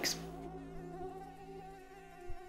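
Mosquitoes in a cage buzzing: a faint, steady wingbeat whine with a slight waver in pitch.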